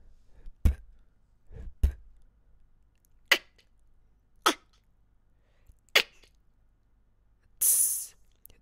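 Beatboxed mouth-percussion sounds recorded one at a time with pauses between: a few low kick-drum-like thumps in the first two seconds, then three sharp snare- or rim-like clicks about a second and a half apart, and a short hissing 'tss' like a hi-hat near the end.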